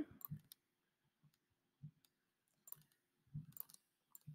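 Near silence broken by a few faint, sharp clicks of a computer mouse, spread out over the few seconds.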